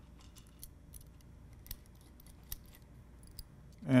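Small Phillips screwdriver driving little screws into a metal camera adapter ring: faint, scattered metallic clicks and ticks, with one sharper tick about two and a half seconds in.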